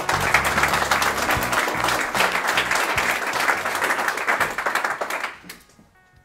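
Audience applauding, a dense patter of many hands that dies away about five seconds in.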